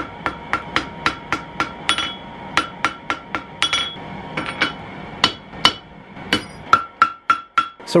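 Light hand-hammer blows on a red-hot metal rod lying on an anvil, about four a second, each with a short metallic ring; the blows pause briefly about halfway, then resume. This is gentle hammering to even out a warped end of the rod being forged into a staple.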